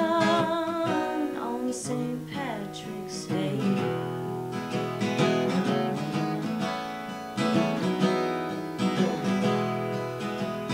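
Acoustic guitar playing a song, with a woman singing over it in phrases that break off for stretches of guitar alone.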